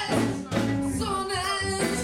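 A live band playing: a singer over electric guitar, bass guitar and drums. A sung phrase starts about half a second in, bending up and down in pitch over steady bass notes.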